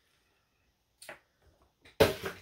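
Near silence, with one brief sharp click about a second in and a few faint ticks after it.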